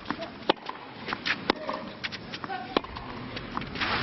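Tennis rally on a clay court: the ball is struck by racquets about once a second, sharp pops with lighter scuffs of shoes on clay between them. A short burst of noise comes just before the end.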